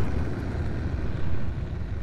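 Deep rumbling tail of a cinematic sound-design boom, slowly fading.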